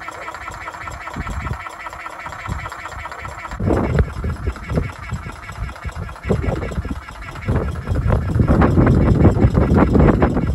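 Whale Gulper 12 V diaphragm waste pump running with a steady, rapidly pulsing buzz. From about three and a half seconds in come irregular gurgling surges that grow louder toward the end, as waste is drawn up the suction hose. The pump struggles a little on a seven-foot lift.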